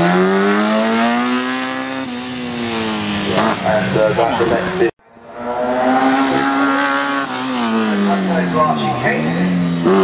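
Historic single-seater racing car engines being driven hard. The engine note climbs, drops sharply about two seconds in as the car shifts gear, and after a brief break climbs and falls again as a car accelerates and lifts off.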